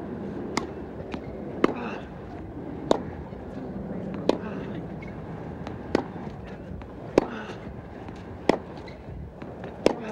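Tennis ball struck back and forth by rackets in a baseline rally: eight sharp pops, about one every 1.2 to 1.6 seconds, over a steady crowd hum.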